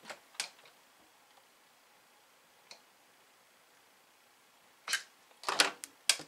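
Handling noise from an opened Atari 1050 floppy disk drive mechanism: a few faint, isolated clicks, then a short cluster of louder clicks and knocks near the end as the drive is gripped and moved.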